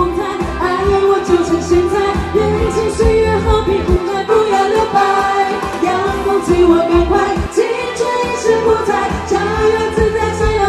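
A Mandarin pop song performed live: female voices singing into microphones over loud amplified pop backing music with a heavy bass.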